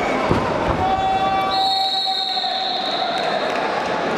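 Thumps of wrestlers' feet and bodies on the mat, then a long steady high whistle starting about a second and a half in and lasting about two seconds: the referee's whistle stopping the action. Arena crowd noise and shouting run underneath.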